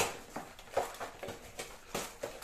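Grocery packaging being handled: a sharp click, then a few soft rustles and light knocks as a multipack of ice creams is picked up and turned over.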